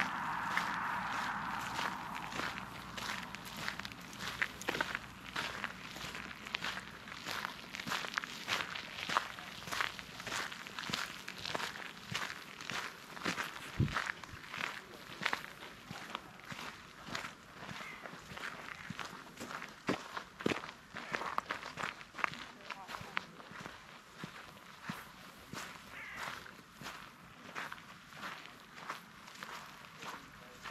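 Walking footsteps at a steady pace, about two a second, on a gravel path strewn with fallen leaves and then on frosted grass. A rushing sound fades out over the first couple of seconds.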